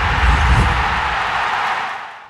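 Intro sting for an animated logo title card: a loud, steady rushing noise over deep bass, fading out near the end.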